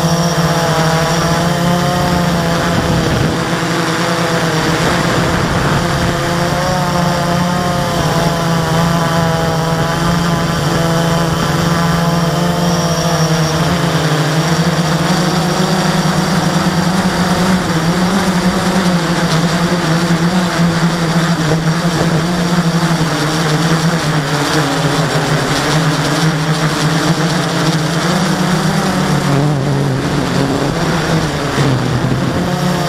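Blade 350QX quadcopter's four brushless motors and propellers in flight, heard close up from a camera mounted on the drone: a loud, steady buzzing whine whose pitch wavers up and down as the motor speeds change.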